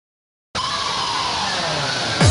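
An electronic whoosh effect that opens a hard-dance track. After about half a second of silence, a steady hiss sets in, with a tone in it that glides slowly downward.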